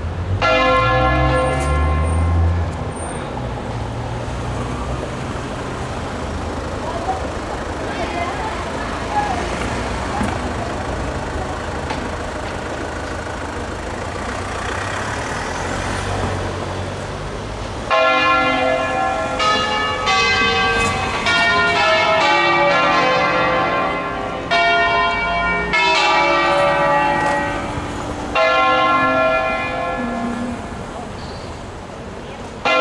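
Manually rung six-bell church peal in C: the bells sound briefly at the start, then give way for about fifteen seconds to a steady rumble and hiss of a road vehicle. From about eighteen seconds in the bells ring again, several bells striking in quick succession and overlapping, with two short breaks.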